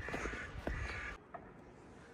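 A crow cawing over footsteps crunching on snow, cutting off suddenly about a second in.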